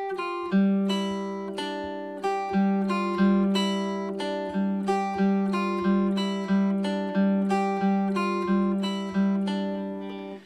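Hollow-body archtop guitar playing a slow, even line of single picked notes, about three notes every two seconds, each ringing into the next: a demonstration of reverse alternate picking.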